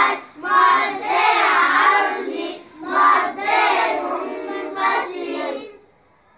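A group of children reciting a tajweed lesson in chorus, a sing-song chant in several phrases with short breaths between them, stopping just before the end.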